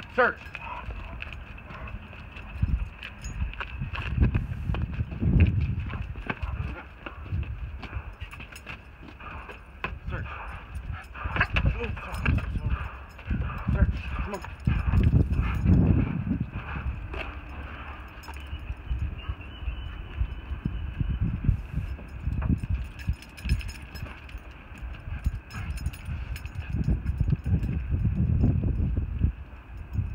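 A dog and its handler walking on asphalt: irregular footsteps and low thumps of handling or wind on the phone's microphone, with scattered light clicks.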